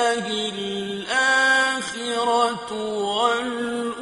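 A male Quran reciter chanting in the melodic mujawwad style, one voice holding long drawn-out notes and ornamenting them with turns and slides in pitch.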